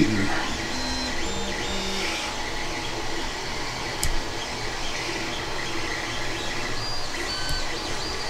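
Steady room background noise, an even hum and hiss, with a single sharp click about four seconds in.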